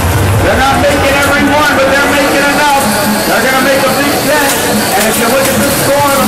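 An arena public-address announcer's voice, echoing and indistinct, over the hubbub of a large crowd.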